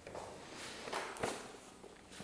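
A person's footsteps, a few quiet steps about a second in.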